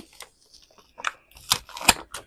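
Clear plastic packaging sleeve being handled and its round sticker seal peeled open. There are a few sharp crackles and clicks, the loudest two near the end.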